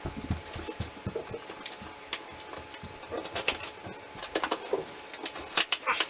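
A cardboard subscription box being handled and opened by hand: irregular rustling, scraping and sharp clicks, with a few longer squeaky scrapes in the second half.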